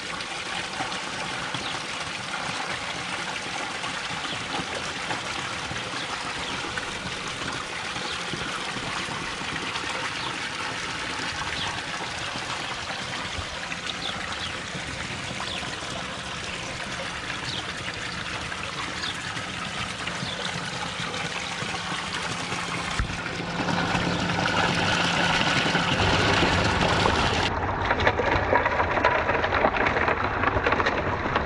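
Pump-fed water running steadily down a clear riffle sluice and splashing into a plastic tub. The water sound gets louder about 23 seconds in.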